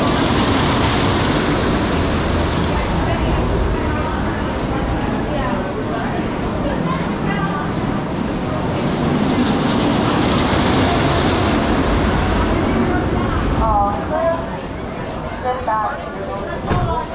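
Wooden roller coaster train running on the track beside the station: a loud rumbling roar that swells twice and drops away about thirteen seconds in. Brief voices follow near the end.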